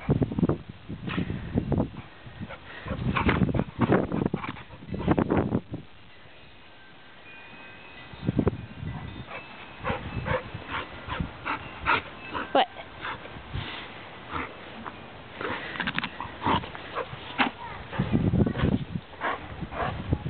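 A dog making small sounds while it plays, with irregular bursts of low rumbling and short clicks from movement and handling.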